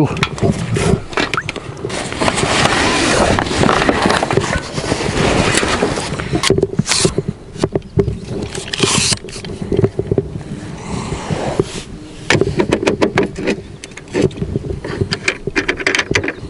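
Water splashing and sloshing as a long metal pole is worked through weedy pond water, with scrapes, clicks and knocks of gear against a metal fishing platform. The splashing is densest early on; separate sharp knocks and clicks follow.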